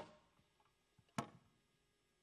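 Two sharp clicks a little over a second apart, each ringing briefly in the hall, the second slightly louder, over near silence.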